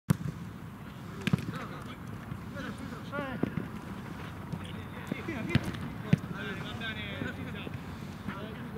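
Football match play on artificial turf: a few sharp thumps of the ball being kicked, one right at the start and others about a second in and near six seconds, amid players' short shouts.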